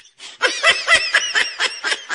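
Laugh-track sound effect: a quick run of high-pitched giggling laughs that starts a moment in, is loudest early and then tapers off.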